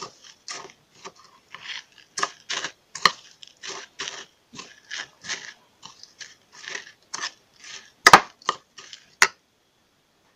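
Metal scraping and crunching in a ceramic bowl of crushed crackers and canned sardines, in short irregular strokes about two a second. Two sharp metallic clinks against the bowl come near the end.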